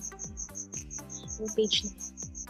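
Background music with a steady beat, mixed with a high, evenly repeating chirping about seven times a second, like a cricket.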